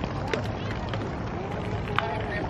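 People talking in the background over a steady low outdoor rumble, with a few faint clicks.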